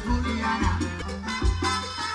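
Live band playing salsa-style Latin dance music, with a repeating bass line under the melody.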